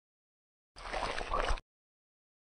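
Sound effect of cream being squeezed out of a tube: one short squeeze, just under a second long, starting about three-quarters of a second in.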